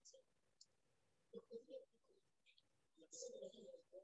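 Near silence: room tone over a silent video playback, with a few faint clicks and two brief, faint indistinct sounds.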